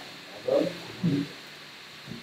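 A man's voice, muffled and echoing, giving two short loud utterances about half a second and a second in, over a steady hiss.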